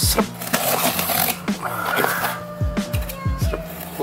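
Utility knife slitting packing tape on a cardboard box, with scratchy cuts and scrapes of the blade along the tape. Background music with a low beat runs underneath.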